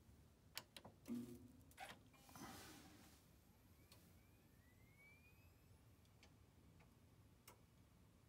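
Mostly quiet as an iMac G3 is switched on: a few faint clicks in the first two seconds and a faint rising whine from about three and a half seconds in, with the odd click later.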